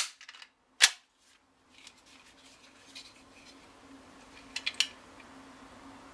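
Ruger 22/45 Lite pistol's slide racked and snapping forward, one sharp metallic click just under a second in. A few faint clicks follow over a steady low hum as a trigger gauge is set against the trigger.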